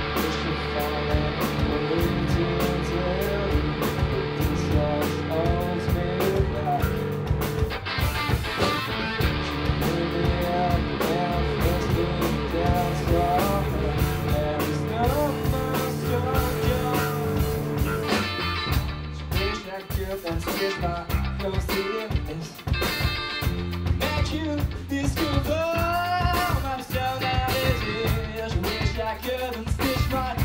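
Live rock band playing: electric guitar, electric bass and drum kit, with a lead vocal sung over them. A little past the middle the band thins out to sparse, stop-start playing for several seconds before the full sound comes back.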